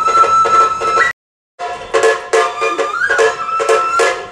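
Kagura music led by a shinobue bamboo flute: a long held high note, a short break into silence about a second in, then the flute comes back and slides up to another held note, over a quick steady beat.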